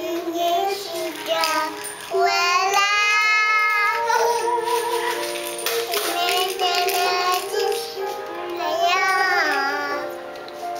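A toddler singing a Da Ai TV drama's closing theme song along with music playing, with long held notes around two to four seconds in and again near the end.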